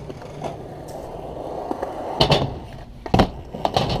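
Skateboard wheels rolling steadily on concrete, then two loud sharp cracks of the board about a second apart, followed by a few lighter clacks.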